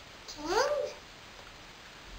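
A single short vocal call, about half a second long, rising then falling in pitch.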